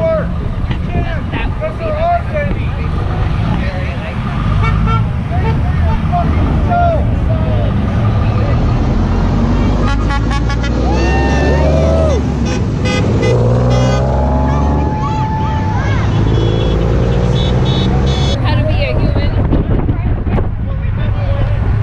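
Cars and trucks passing close by on a busy road, a steady low rumble of engines and tyres. Car horns honk several times in the second half.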